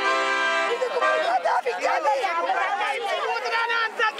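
A held accordion chord ends within the first second, then several people talking over one another in lively chatter.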